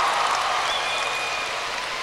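Large audience applauding, the clapping slowly dying down.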